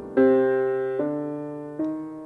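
Jazz piano playing three chords in turn, each struck and left to ring and fade.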